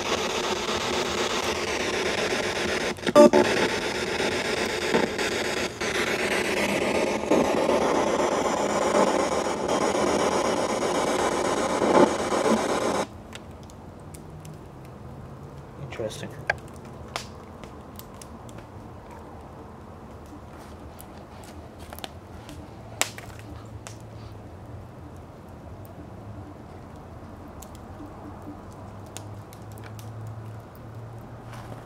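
Loud radio static hissing with brief broken snatches of sound in it, cutting off abruptly about thirteen seconds in. After that comes a much quieter stretch with a few faint clicks and rustles.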